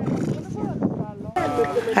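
People's voices over an outdoor murmur, then a louder, close voice after a sudden change about a second and a half in.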